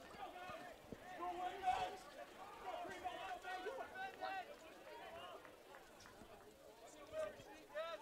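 Faint, distant voices shouting and calling out across a soccer field, on and off.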